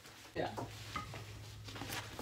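A short spoken "yeah", then a steady faint hiss with a low hum underneath.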